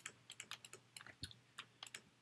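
Faint, irregular clicks and taps of a stylus on a pen tablet as a line of an equation is handwritten, several ticks a second.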